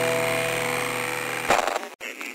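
Electronic IDM music: a held chord of steady tones fading slowly, then a short noisy swell about a second and a half in that cuts off to silence just before the end, as one track ends.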